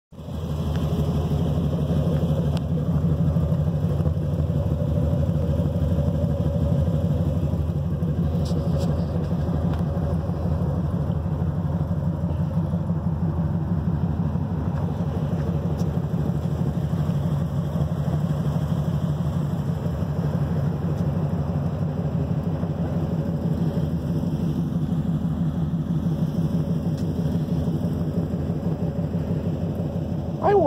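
Pickup truck engine idling steadily with an even exhaust pulse.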